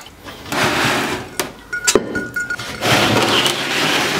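Bowls being swapped under a draining grain bag: stretches of scraping and rustling noise, with two sharp clinks about one and a half and two seconds in, the second followed by a brief thin ring.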